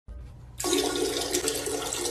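Toilet flushing, a loud rush of water starting about half a second in.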